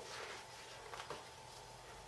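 Faint room tone in a pause between spoken lines: a low hiss with a thin steady hum and a couple of soft clicks, one at the start and one about a second in.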